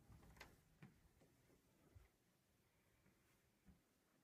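Near silence: room tone, with a few faint soft knocks in the first two seconds and one more near the end.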